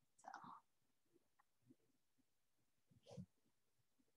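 Near silence, with two faint, short sounds: one just after the start and one about three seconds in.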